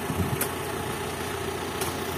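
Old Toyota Dyna dump truck's engine idling steadily, with two faint ticks.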